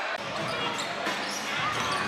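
A basketball being dribbled on a hardwood court over the steady murmur of an arena crowd.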